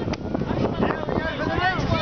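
A single sharp slap of hands in a two-handed high five just after the start, followed by excited voices and laughter, with some wind on the microphone.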